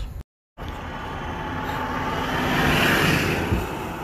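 Road traffic: a vehicle passing close by, its tyre and engine noise swelling to a peak about three seconds in and then fading. It comes in after a brief gap of total silence near the start.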